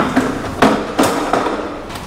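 Folding platform trolley being opened out and set down on a concrete floor, with a box loaded onto it: a quick run of about five clanks and knocks, the loudest about half a second and a second in.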